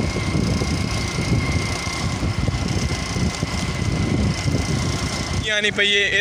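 Motorcycle riding along a road: a rough, uneven rumble of engine and wind on the microphone, with a faint steady whine over it. A man starts speaking near the end.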